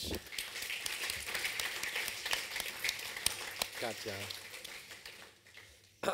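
Audience applauding, the clapping thinning out and dying away in the last second or so.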